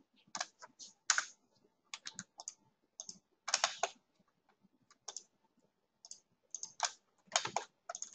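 Computer mouse and keyboard clicking in short irregular clusters of two or three clicks, as a line is drawn vertex by vertex in 3D software. The loudest clicks fall about a second in and around three and a half seconds in.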